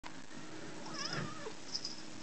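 A domestic cat gives one wavering, complaining meow about half a second long, which drops in pitch at the end. A couple of short, sharp ticks follow just after it.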